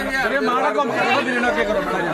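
Several people talking at once: overlapping, lively chatter of a small group.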